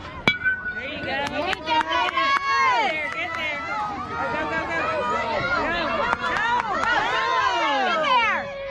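A baseball bat strikes the ball with a sharp crack and a short ringing ping. Many voices of spectators and players then shout and cheer over one another.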